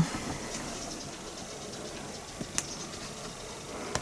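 Quiet room tone with a faint sharp click about two and a half seconds in, as a plastic sunflower-oil bottle is handled and turned in the hand.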